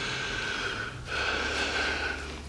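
A man crying: two long, ragged sobbing breaths of about a second each, back to back.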